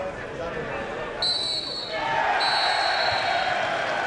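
Referee's whistle blown in long blasts, a short one about a second in and a longer one after a brief gap, over crowd chatter: the full-time whistle.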